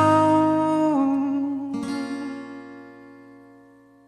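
Song ending on acoustic guitar: a held note drops to a lower chord about a second in, then a last strum at nearly two seconds rings out and fades away.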